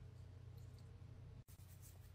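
Near silence: room tone with a steady low hum and faint scratching of fingernails on skin, broken by a brief dropout about two thirds of the way in.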